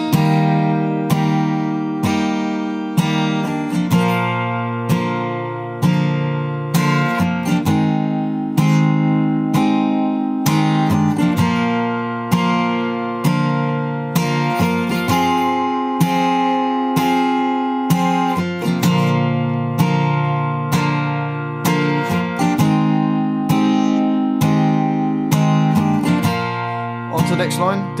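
Steel-string acoustic guitar capoed at the third fret, strummed in a steady rhythm through a chord progression of C, G, F, G and D minor.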